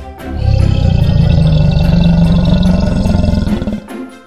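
A deep, pulsing crocodilian roar lasting about three seconds, over light background music.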